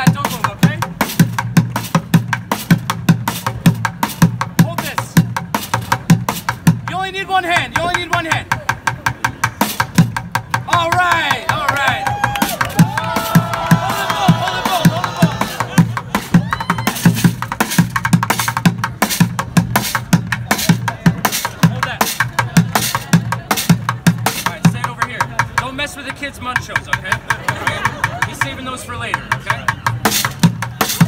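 Fast drum groove played with sticks on upturned plastic buckets, with strikes on a metal frying pan and cooking pot mixed in, many hits a second without a break.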